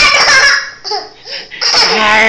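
A toddler laughing and squealing in play, loud at the start and again near the end, with a short lull between.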